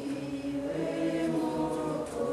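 Several voices of a small congregation sound together in long, held notes, like a short choral chant.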